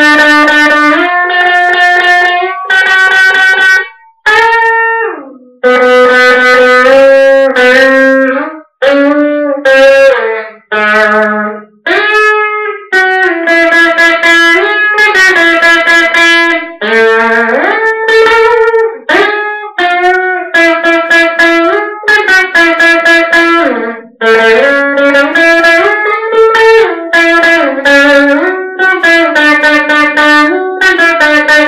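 Stratocaster-style electric guitar played as a solo lead line of sustained single notes, with string bends and slides between pitches and a few brief gaps between phrases.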